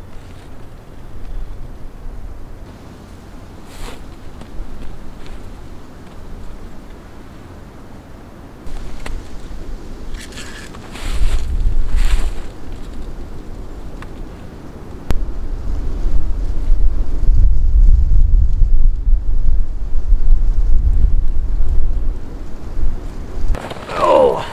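Wind buffeting the microphone: a low rumbling that comes in gusts, swelling about eleven seconds in and again from about fifteen seconds to near the end, with a few brief rustles in between.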